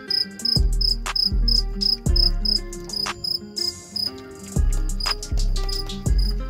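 Crickets chirping in a steady fast pulse of short high chirps, about four a second, over background music with deep bass beats.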